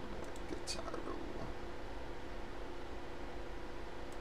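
A few sharp computer clicks and a faint murmured voice in the first second and a half, then a steady low hum.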